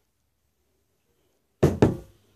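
Silence, then near the end a couple of heavy knocks as a chrome hydraulic pump assembly is set down on a concrete workbench, together with the start of a man's word.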